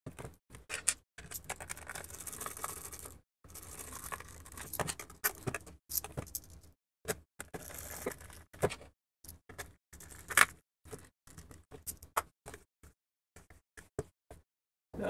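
Hand screwdriver turning screws into a plastic enclosure, with stretches of scraping as the screws are driven, and irregular clicks and knocks as the box is handled and turned over.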